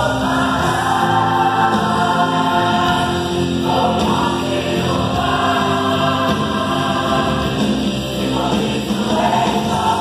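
A large mixed gospel choir singing, holding long sustained chords in phrases that break briefly about three and a half and eight seconds in.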